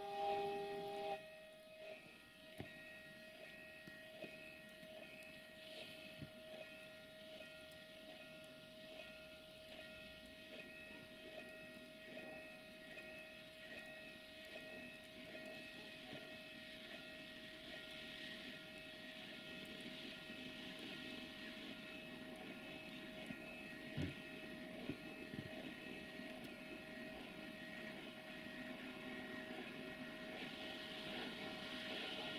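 A distant train approaching, heard faintly as a steady hum and rumble that slowly grows louder toward the end. A single held horn note cuts off about a second in.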